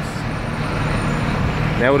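Busy street traffic, with buses and cars running past in a steady low rumble; a voice starts just before the end.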